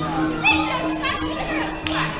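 Accompanying music with a steady low tone, mixed with children's and onlookers' voices; one high child's cry about half a second in, and a sharp click near the end.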